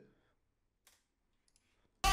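Near silence, with a faint click about a second in and two fainter clicks near the end.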